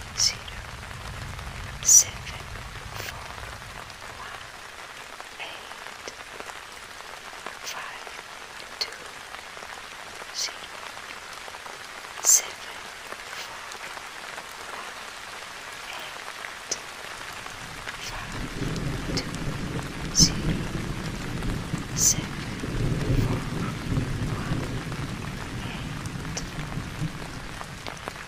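Steady rain with sharp, scattered drop ticks, and a low rumble of thunder that builds about two-thirds of the way in and then fades.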